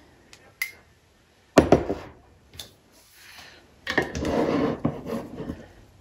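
Kitchen utensils and containers being handled at a countertop: a small click, then one sharp knock about a second and a half in, and a rough scraping stretch of a second or so near the end.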